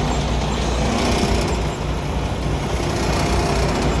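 Diesel semi-truck engine idling, a steady low rumble.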